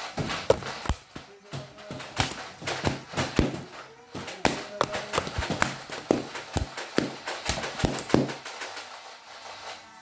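Nerf foam-dart blasters being fired again and again: a quick, irregular run of sharp clacks that stops about a second and a half before the end.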